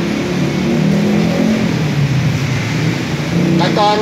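Low, steady engine rumble of street traffic, a motor vehicle running close by.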